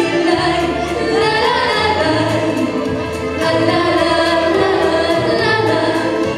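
A youth vocal ensemble singing together into microphones over accompanying music with a steady beat.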